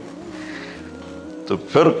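Soft background music of a few sustained tones under a pause in a man's speech; his voice comes back near the end.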